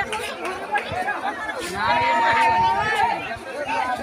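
Crowd of excited villagers talking and shouting over one another, with one long held call about halfway through.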